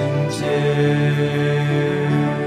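Worship song music with long held notes in several layers.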